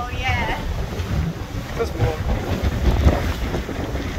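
Wind buffeting the microphone on the open deck of a moving ferry, an uneven low rumble of gusts throughout. A woman's voice is heard briefly at the start.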